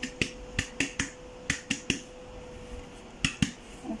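Hand tapping a tipped-up mixing bowl to knock the last of the flour out: a series of short, sharp taps in small groups.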